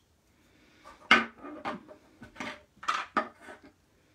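Clear acrylic stamp blocks and an ink pad clacking and knocking as they are picked up, handled and set on the desk: a handful of sharp hard-plastic knocks, the loudest about a second in.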